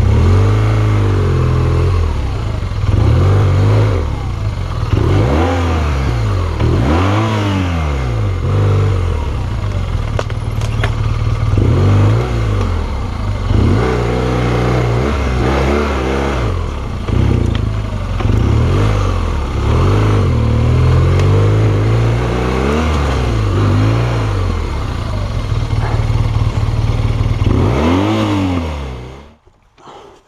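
BMW R1200GS boxer-twin engine running at low speed and being revved up and down in repeated short bursts of throttle while picking a way through tight trail. The engine cuts off about a second before the end.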